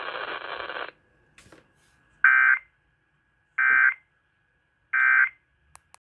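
Three short, loud, buzzy data bursts from a radio, each about a third of a second and spaced a little over a second apart: the Emergency Alert System end-of-message code that closes a Required Monthly Test. The station's broadcast audio cuts off about a second in, before the bursts.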